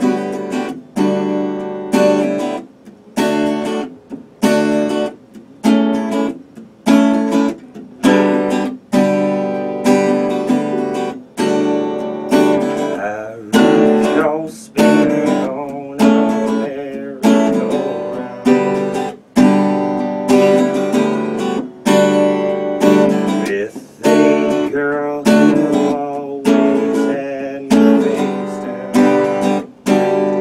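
Acoustic guitar strummed live in a steady rhythm, each chord ringing and fading before the next.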